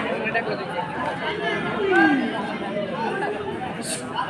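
Many voices talking and calling out at once: crowd chatter, with one louder falling call about two seconds in.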